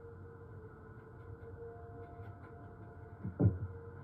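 A faint steady hum, then near the end one short, loud, deep boom that falls in pitch: a dramatic boom sound effect.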